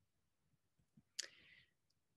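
Near silence, broken about a second in by one short click and a brief faint hiss.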